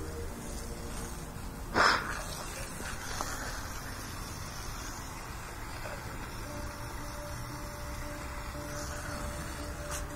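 Water spraying from a garden hose nozzle onto a horse's legs, a steady hiss, with one short louder burst of noise about two seconds in.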